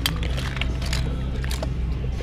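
Background music with a steady low bass line, with a few light clicks of small die-cast toy cars being picked through by hand.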